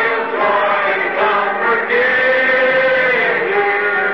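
A congregation singing a hymn together, slow with long held notes, on an old recording with a dull, narrow sound.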